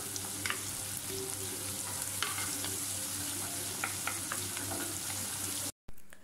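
Chopped tomato, small onions and garlic sizzling steadily in oil in a clay pot, stirred with a wooden spatula, with a few faint taps along the way: the tomato is being fried down until it softens and mashes. The sound cuts off abruptly just before the end.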